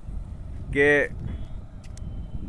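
A man says one short word in Hindi about a second in, over a steady low rumble of outdoor background noise.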